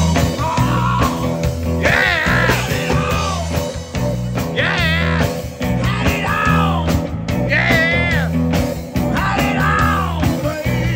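Live rock band playing amplified through a PA: drum kit, bass guitar and electric guitar, with the drummer singing lead vocals in phrases every few seconds.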